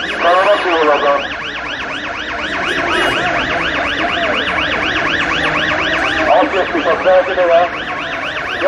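An electronic siren sounding a rapid yelp of rising whoops, about four a second. Crowd voices are heard over it at the start and again near the end.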